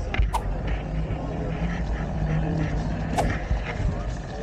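Wind buffeting the action camera's built-in microphone as the rider moves slowly among parked electric motorbikes, a steady low rumble with a faint hum over it. Two short, sharp clicks come about a third of a second in and again about three seconds in.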